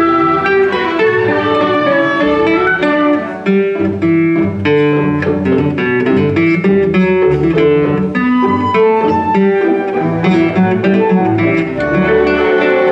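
Nylon-string classical guitar playing a run of plucked notes in a concerto, accompanied by an orchestra of bowed strings holding longer notes beneath it.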